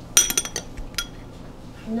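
Metal spoon clinking against ceramic bowls while spooning chopped green onions: a quick run of several clinks right at the start, then one more about a second in.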